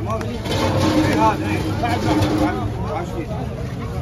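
Several men talking over one another, with a steady low hum underneath. A rushing noise swells about half a second in and fades out after about two and a half seconds.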